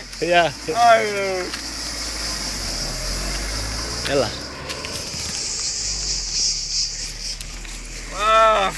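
A car driving slowly past and pulling away, its engine a low rumble loudest about three seconds in, over a steady high buzz of insects.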